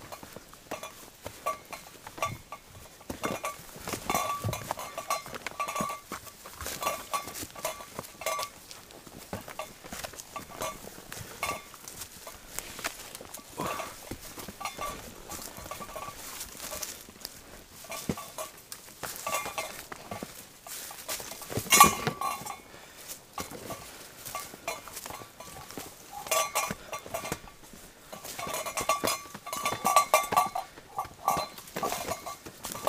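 Footsteps and brushing through ferns and undergrowth, with metal gear on a backpack jingling over and over in time with the walking. One sharper knock, a little before two-thirds of the way through, is the loudest sound.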